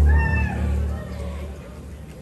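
A band's sustained low note dies away over about a second and a half. Near the start a single voice gives one short high-pitched whoop over it, rising and then falling.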